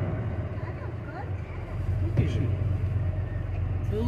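Steady low rumble of a car's engine and tyres, heard from inside the moving car's cabin, with a few brief snatches of voice.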